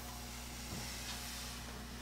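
Faint room tone: a steady low electrical hum under a soft even hiss, with one small tick about three quarters of a second in.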